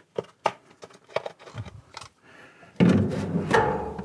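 Light plastic clicks and taps of a Wagner paint sprayer's parts being handled and fitted back together by hand, the suction tube pushed in and the reservoir brought up to the gun. About three seconds in, a louder steady sound starts and carries on.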